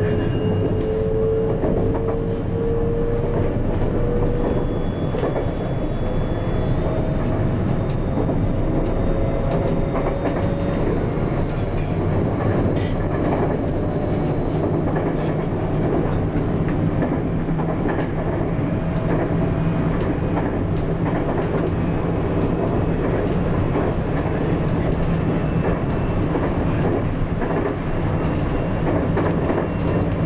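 521-series electric multiple unit running along the line, heard from inside the driver's cab: a steady rumble of wheels on rail. Over the first ten seconds or so, a thin whine from the electric traction motors rises slowly in pitch as the train gathers speed, then fades.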